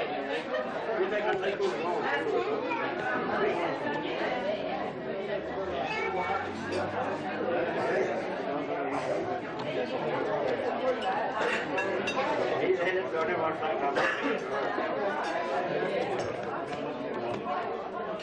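Many people talking at once: the indistinct chatter of dinner guests in a large room, steady throughout.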